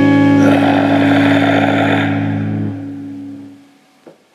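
Raw black metal band recording: a held chord on distorted electric guitar and bass rings out and fades away. The bass drops out about two-thirds of the way through, and the rest dies away to quiet just before the end.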